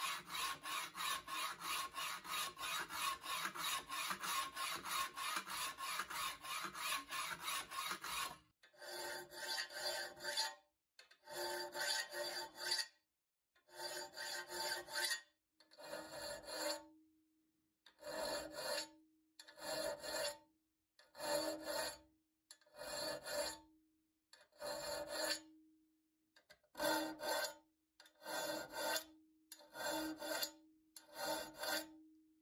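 Hand file scraping across the rusted steel plate of a paper cutter in quick, continuous strokes to level the rusted surface. After about eight seconds it changes to slower, separate strokes of a round file along the cutter's wavy blade edge, each stroke about a second long with a short pause between.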